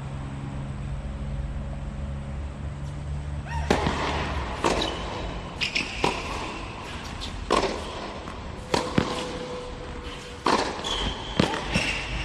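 Tennis rally on a hard court: a serve struck about four seconds in, then sharp racquet hits and ball bounces about every second, with a few short, high sneaker squeaks between them.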